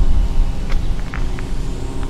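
A steady low rumble, with a few light clicks about a second in as a climbing stick and its Amsteel rope daisy chain are handled against a tree trunk.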